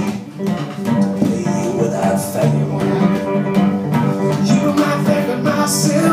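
Acoustic guitar played live in a blues song, an instrumental passage after a last sung word at the very start.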